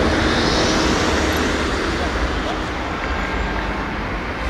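Steady rush of road traffic, growing a little quieter toward the end.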